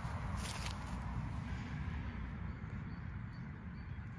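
Footsteps swishing through long grass over a low, steady rumble on the microphone. The swishing dies down after about two seconds.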